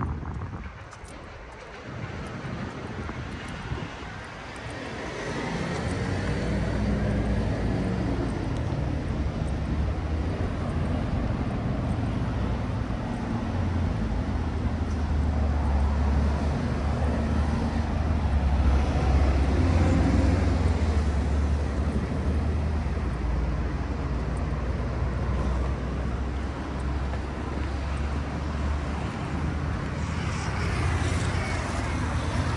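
Outdoor city noise: a low rumble that swells about five seconds in, is loudest a little past the middle, and stays up to the end.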